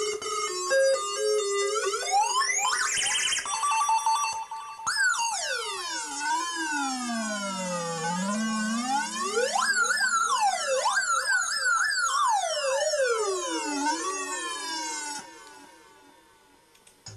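Circuit-bent electronic sound device played through hand-touch body contacts. It gives short stepped electronic notes, then pitch sweeps that rise and fall like a siren, and fades out near the end.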